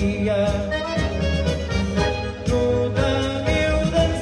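Live dance-band music: an accordion-led tango playing an instrumental passage with sustained, wavering melody notes over a steady beat of about two a second.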